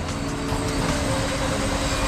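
Steady outdoor street noise with a low traffic hum, picked up on an open field microphone.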